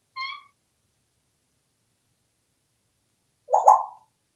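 African grey parrot calling twice: a short high whistled chirp just after the start, then a louder, lower call near the end.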